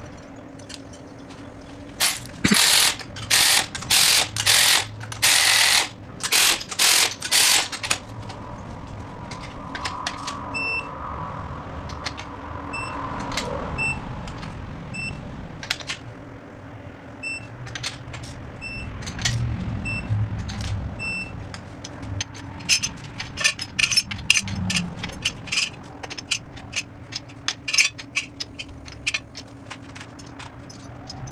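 Hand ratchet wrench clicking as rocker-arm studs are run down into a Pontiac V8 cylinder head: a series of short, loud ratcheting strokes about two seconds in, then scattered clicks and another quick run of ratchet clicks near the end. A faint, evenly spaced high beep sounds through the middle.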